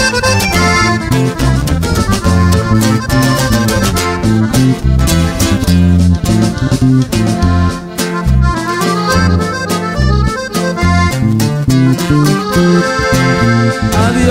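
Norteño instrumental break between verses: a button accordion plays the lead melody over bajo sexto strumming and a walking bass line.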